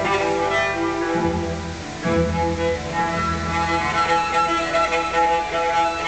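Bowed cello playing long, sustained notes over low double-bass notes, part of a small jazz ensemble's performance.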